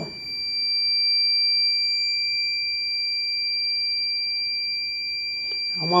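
Heat press timer buzzer sounding a steady, unbroken high-pitched tone, signalling that the 48-second pressing cycle has finished.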